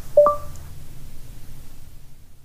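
Short two-note electronic chime from a smart speaker, a low note followed at once by a higher one, ringing briefly, over a faint low hum that fades out.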